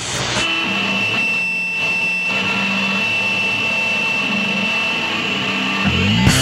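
Electric guitar through effects pedals playing a noisy intro: a steady high-pitched whine with low held notes coming and going underneath.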